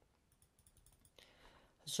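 A near-silent pause with a few faint clicks, then a short soft breath just before the voice comes back at the very end.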